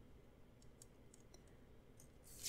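Near silence with a few faint, light ticks from a pen writing on a paper planner page.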